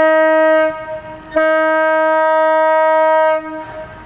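Fishing trawler's horn sounding long, steady blasts: one ending under a second in, then another of about two seconds. This is the boat signalling its departure from port.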